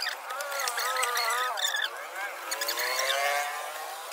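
A high-pitched voice, like a child's, calling or talking in two drawn-out stretches, with no low end.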